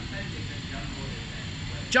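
Steady background hiss of a large shop's indoor ambience, with faint distant voices. There are no trampoline bounces; a voice begins at the very end.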